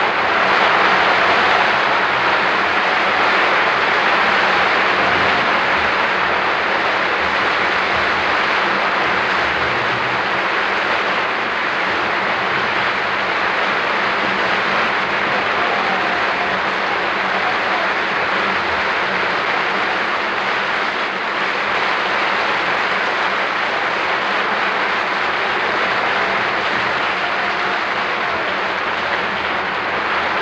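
Opera house audience applauding, a long, steady ovation with no orchestra or singing.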